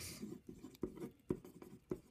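Pencil writing a word on paper: a run of short, uneven scratching strokes with a few sharper ticks.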